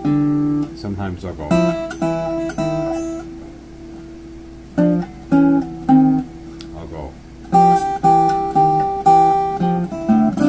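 Fingerpicked hollow-body archtop guitar playing a blues phrase, with bass notes under melody notes. It plays in three short bursts, pausing briefly about three seconds in and again around six to seven seconds.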